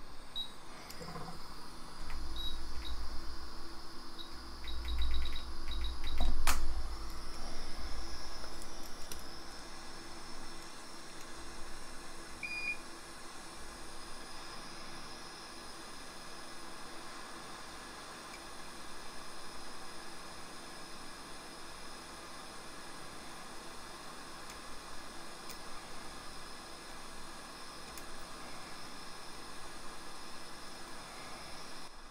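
A string of short, high electronic beeps from bench repair equipment, with a few knocks and bumps in the first several seconds, then a steady faint hiss.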